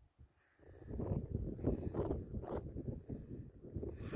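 Wind buffeting the microphone: an irregular low rumble that starts under a second in and keeps on.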